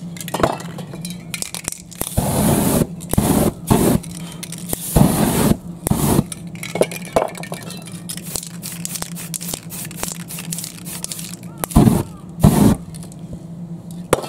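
Aerosol spray-paint can spraying in a series of short hisses of about half a second to a second each: several in a row early on, and two more near the end, over a steady low hum.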